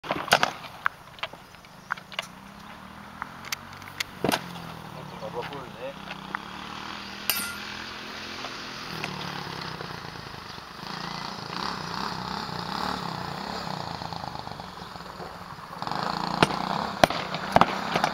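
Sharp knocks and clacks of sparring: swords striking round wooden shields in quick runs of blows, about ten in the first four seconds, fewer in the middle, and another flurry near the end.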